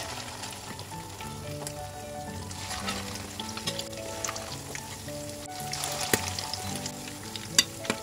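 Thai tuna fish cakes (tod man) deep-frying: the batter sizzles and bubbles steadily in hot oil as spoonfuls are added one at a time. A couple of sharp taps come near the end.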